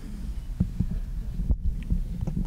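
Handling noise from a microphone on a table stand as it is gripped and tilted: low rumbles and thuds, with a few short knocks, the sharpest about one and a half seconds in.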